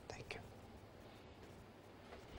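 Near silence: faint steady room hiss, with a couple of faint short soft sounds in the first half-second.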